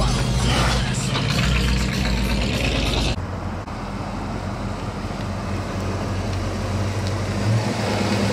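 Lowrider cars cruising slowly past. For about three seconds there is a loud, busy mix of engine and surrounding noise, which cuts off abruptly. After that comes the steady low running of a Fox-body Ford Mustang GT's V8 as it rolls by, swelling briefly near the end.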